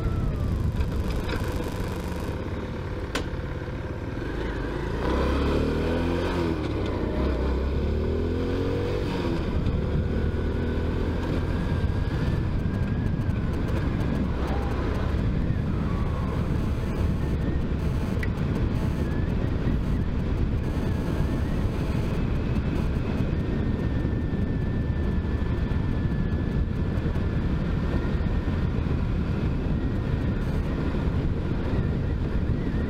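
Motorcycle engine running under way with wind rushing over the microphone. About five seconds in, the revs climb in several quick rising sweeps as the bike accelerates, then it settles into a steady cruise.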